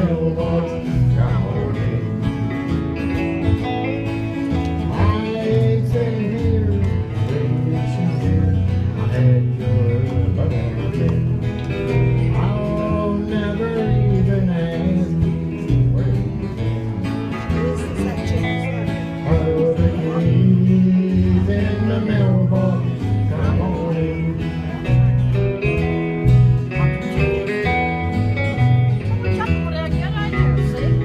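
Live country band playing a song, with electric guitar and strummed acoustic guitar over a steady low line.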